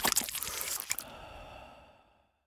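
Electroacoustic music: a dense run of crackling, clicking noises for about the first second, then a ringing resonance that fades away near the end.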